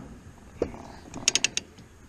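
A faint short creak, then a quick run of about five sharp clicks about a second and a half in.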